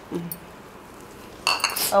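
Steel kitchen vessels clattering and ringing briefly about one and a half seconds in, as a dish is set down among the pots, after a small clink near the start.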